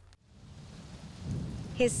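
Rain sound effect fading in, with a low rumble of thunder swelling under it about a second in.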